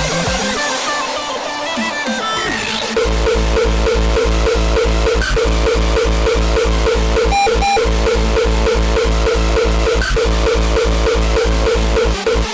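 Hardstyle dance track. For about the first three seconds it is a build-up of climbing synth notes with no bass, then the heavy kick drum and bass drop in on a steady four-to-the-floor beat.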